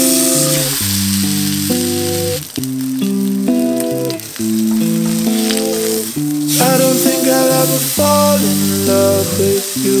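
Steak searing in a hot cast-iron skillet, a steady sizzle of frying, under background music of held chords.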